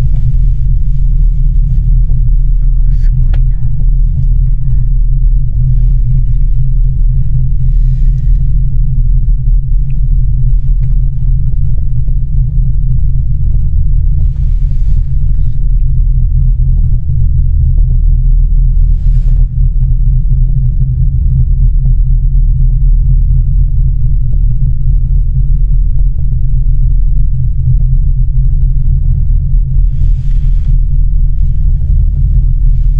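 Loud, steady low rumble inside a Miyajima Ropeway gondola cabin as it rides along the cable.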